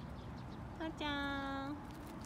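A short vocal call at one steady pitch: a brief note a little before the middle, then a longer held note lasting under a second.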